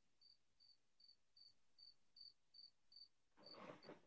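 Near silence with a faint cricket chirping: short, high chirps repeating evenly about two and a half times a second.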